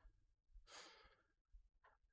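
Near silence: room tone, with a faint breath out from the presenter about halfway through and a shorter faint sound near the end.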